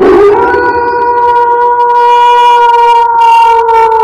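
A single long note blown on a horn, held at a steady pitch and dipping slightly near the end.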